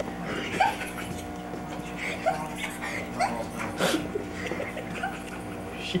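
A dog whimpering in short rising whines, four or five over a few seconds, over a steady low hum.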